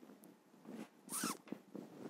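Quiet handling of small glass tincture bottles and a funnel, with faint light clicks, and one brief squeaky hiss about a second in.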